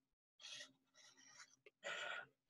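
Faint scratching of a black felt-tip marker drawing lines across paper, in short strokes from about half a second in and again near the end.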